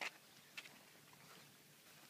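Near silence: faint outdoor background with two soft brief ticks, one at the very start and one about half a second in.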